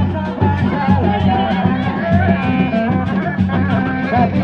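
Live Sundanese Reak music: drums beating a steady repeating rhythm under a wavering, bending melodic line.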